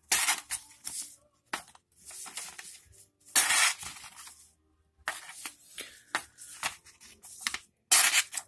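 Kershaw Emerson 6055 (CQC-4KXL) folding knife push-cutting straight down into the edge of a sheet of copy paper: a series of short papery cuts and rips, the loudest about three and a half seconds in. The edge bites in only about half the time and tears the paper otherwise, a sign it is not very sharp.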